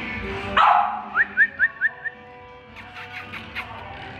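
An American Bully dog gives one loud bark-like sound about half a second in, then five short rising yips in quick succession, over background music.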